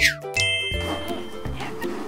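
An edited-in sound effect: a quick falling glide, then a bright bell-like ding that rings for most of a second. It plays over light background music.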